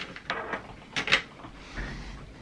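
Light clicks and rattles of small metal tools, as a pair of tweezers is picked out from among them, with two sharper clicks close together about a second in.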